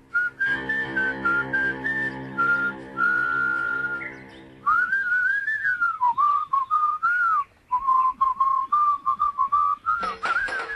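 A tune whistled over backing music: a few held notes over a sustained chord, then, after a brief dip about four seconds in, a quicker wavering phrase over a ticking beat.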